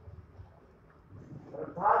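Faint room noise with a low hum, then a man's voice starting to speak again near the end.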